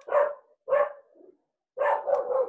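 A pet dog barking three times in quick succession, heard over a video-call microphone.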